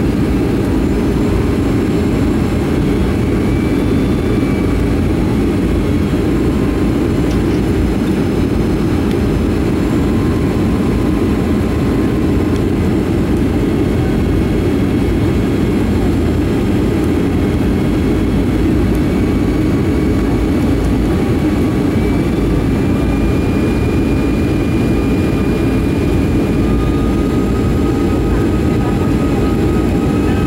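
Steady cabin noise inside a Boeing 757-300 on approach: an even, loud rumble of engine and airflow heard from a window seat over the wing, with faint steady tones above it.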